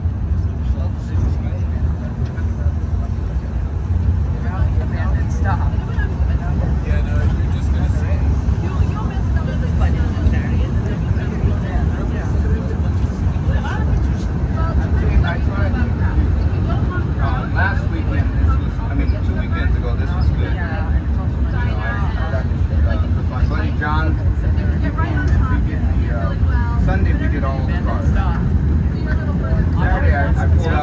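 Open-top 1934 Blackpool boat tram running along its rails, a steady low rumble throughout, with passengers chatting over it from a few seconds in.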